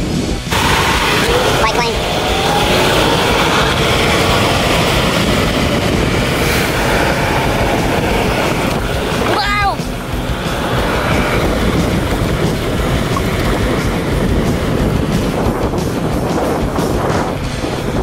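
Wind rushing over the microphone with road and traffic noise while riding an electric scooter along a city street, loud and steady throughout. A brief chirp-like sweep sounds about halfway through.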